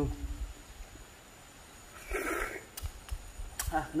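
A person eating grilled apple snails: a short slurp about two seconds in, as the snail's juice is sucked from the shell, between a brief murmur at the start and a sharp click near the end.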